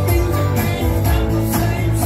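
Live rock and roll played on electric and acoustic guitars, with a strong, steady bass line.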